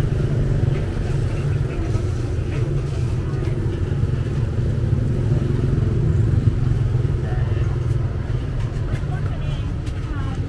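Street-market ambience: a steady low rumble of road traffic and motorbikes, with voices of people talking in the background.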